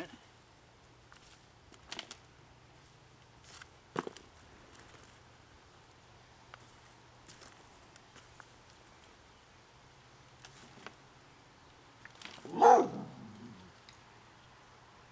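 Gloved hands sifting loose soil in a plastic tub, with a few faint scrapes and taps. Near the end comes one loud bark from a dog.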